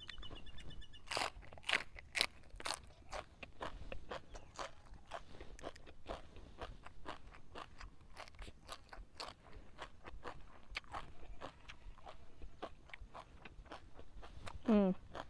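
Close-up chewing of crisp raw vegetables dipped in chili paste: a steady run of sharp, irregular crunches, about two or three a second.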